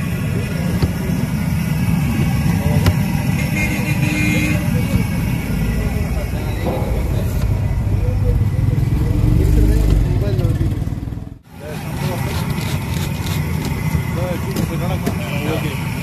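Street ambience: a steady low rumble of vehicle engines and traffic with people talking, the rumble swelling to its loudest about two-thirds of the way through. The sound drops out sharply for a moment just after that.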